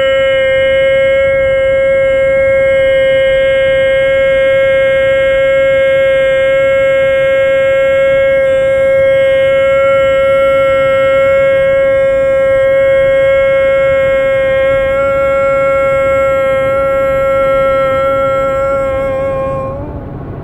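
A man's voice holding one long sung note at a steady pitch, strained, until it cuts off near the end, with car road noise underneath.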